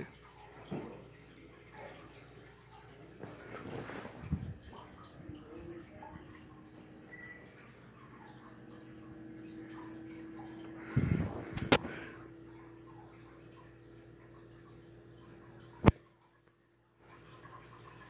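Volume Lighting Minster ceiling fan running, a faint steady whoosh and hum, with a few louder knocks about eleven to twelve seconds in and a single sharp click near the end.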